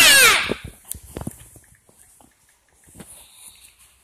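A young girl's high-pitched voice holding a loud note that slides down in pitch and stops about half a second in, followed by soft scattered clicks of the phone being handled.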